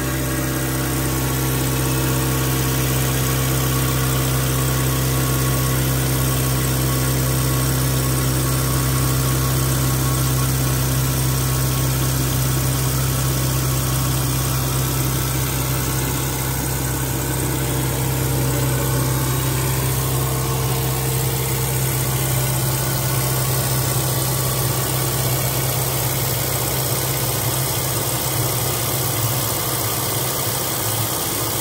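Custom automated boring station running while its spindle bores out and chamfers a molded plastic part: electric motors give a steady machine hum with a strong constant low drone.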